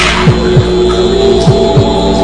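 Suspense soundtrack: a steady low droning hum with held tones, pierced by low double thumps like a heartbeat, a pair about every second and a quarter. A short hissing swell opens it.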